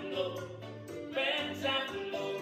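A man singing in a full, operatic voice with vibrato, the louder phrase in the second half, over backing music with a steady bass line.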